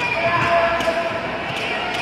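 Spectators shouting and chattering in a large echoing sports hall, with a few dull thuds from taekwondo sparring: kicks and blows landing and feet striking the mat.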